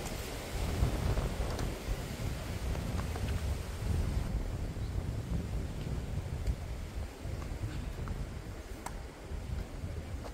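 Strong wind buffeting the camera microphone with a steady low rumble. A few faint sharp taps of a tennis ball being struck sound through it.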